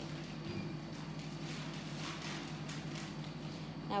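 Fine-tipped drawing pen scratching faintly on paper in short strokes as swirls are drawn, over a steady low hum.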